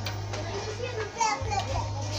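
Background chatter of children's and other people's voices, over a steady low hum.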